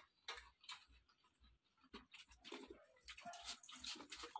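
Faint, scattered clicks and soft smacks of people eating by hand from steel bowls, busier in the last second.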